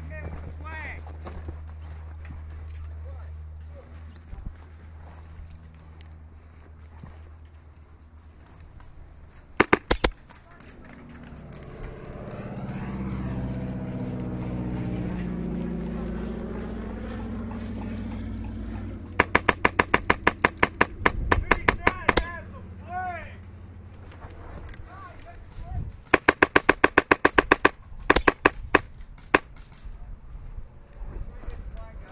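Airsoft rifle firing on full auto: a short burst about ten seconds in, then two longer rapid bursts in the second half, with voices shouting in the gaps.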